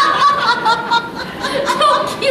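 Several women laughing together.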